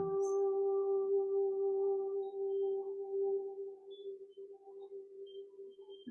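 Ambient background music: one long held drone note with faint overtones, growing quieter in the second half.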